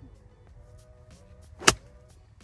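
A golf club striking the ball off the turf from a sidehill lie: one sharp crack about one and a half seconds in. Soft background music plays underneath.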